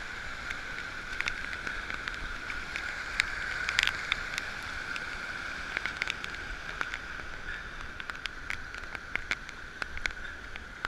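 Heavy rain with a steady rush of running water, and irregular sharp ticks of raindrops striking the camera.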